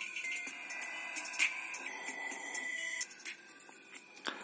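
Music playing through a small vibration speaker (exciter) pressed against the palm of a hand. It sounds thin, with no deep bass, and cuts out about three seconds in.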